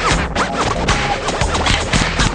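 DJ scratching a record over a playing music track: a run of quick sweeps that rise and fall in pitch.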